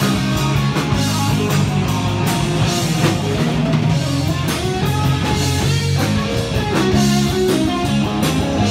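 Live rock band playing loud and continuously: electric guitar, bass guitar and drum kit.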